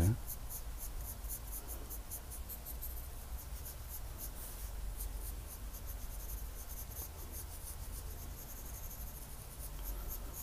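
Graphite pencil scratching on drawing paper in quick, repeated short strokes, hatching fine feather lines.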